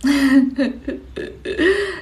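A young woman's voice making wordless vocal noises: several short voiced sounds in a row, the pitch bending up and down.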